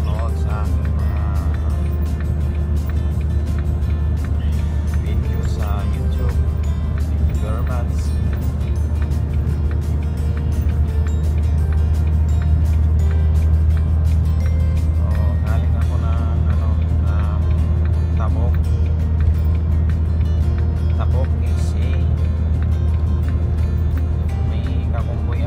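Steady low drone of a truck's engine and road noise inside the cab, with a song with a singing voice playing over it.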